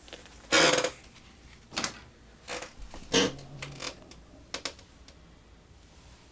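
About six short rustling scrapes of tight fabric in a few seconds, the loudest near the start: compression stockings being worked down off the legs and over the feet.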